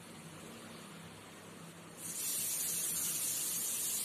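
A faint low hum, then about halfway through a steady high-pitched hiss comes in suddenly and holds.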